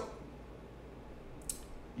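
A quiet pause with no guitar being played: faint room noise and a steady low hum, broken by one short soft hiss about one and a half seconds in.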